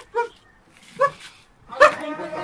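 A dog barking in short, sharp yelps, about four of them spread over two seconds with quiet gaps between.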